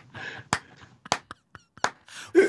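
A man laughing almost silently, just breathy wheezes, with about four sharp hand claps spread through it.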